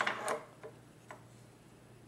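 Handling noise from a drill sharpener's metal drill-holder fixture: a short clatter of small clicks as it is gripped and moved, then two faint ticks.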